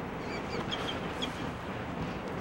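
Steady outdoor background noise with a few short, high bird chirps in the first second or so.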